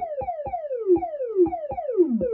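Thomas Henry Bass Drum++ analog drum module triggered in a steady pattern of about four hits a second. Each hit is a tone that starts high and slides down in pitch, ringing on like a synth tom or zap while a knob is turned to reshape the pitch sweep and decay.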